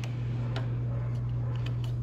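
A steady low hum, with a few light clicks as a motorcycle's plastic trim cover is pressed into its retaining clips by hand.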